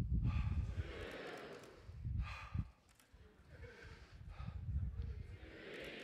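Low rushing rumble of a man riding a large pendulum, swelling and fading with each swing, with noisy breathing.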